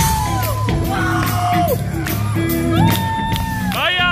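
Live rock band playing: bass and drums come in at the start, under long high sung notes that bend in pitch, with a short whooping cry near the end.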